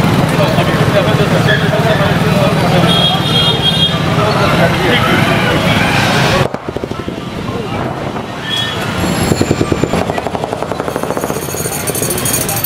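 Busy street noise: many people talking at once over passing traffic. About halfway through it cuts abruptly to a quieter stretch of the same kind of street sound with vehicles and voices.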